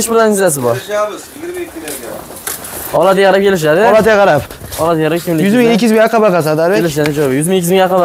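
A person's voice in long, drawn-out phrases, quieter between about one and three seconds in.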